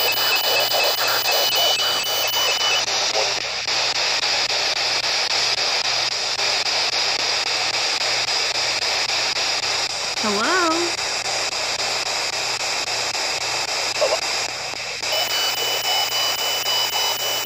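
P-SB11 dual-sweep spirit box scanning through radio stations: a steady wash of static broken by brief snatches of broadcast voices. The clearest fragment comes about ten seconds in.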